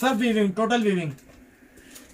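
A person's voice in drawn-out, wordless vocal sounds for about the first second, then a quiet pause.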